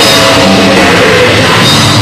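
Black metal band playing live: distorted electric guitars over a drum kit in a loud, dense, unbroken wall of sound.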